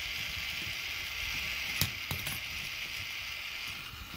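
K'nex coin pusher mechanism running steadily, with a sharp click a little under two seconds in and fainter clicks just after.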